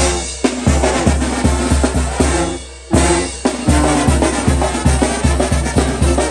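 A banda's percussion section, chrome tarola drums, cymbals and bass drum: two big accented hits about three seconds apart, each left ringing, then an even drum beat of about four strokes a second over a steady bass line.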